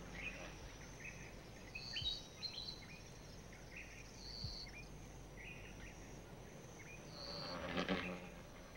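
Faint outdoor nature ambience: a steady low hiss with scattered short, high chirps from small animals, a few per second at irregular intervals.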